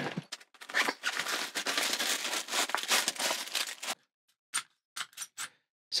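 Handling noise as a nylon tripod carry case is opened and plastic packaging rustles, with a few short rustles and clicks near the end.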